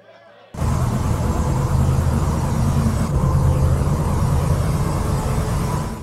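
Loud, heavily distorted live rock music, thick in the bass, starting suddenly about half a second in and cutting off abruptly at the end.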